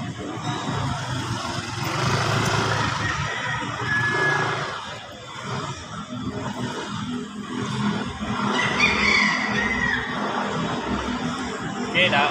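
Motor scooter running at low speed as it rides around a cone course, its engine noise swelling and fading. A brief high squeal, falling in pitch, comes near nine seconds in.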